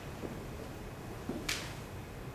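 A single sharp click about one and a half seconds in, with a faint knock just before it, over quiet room tone: the lecture slide being advanced.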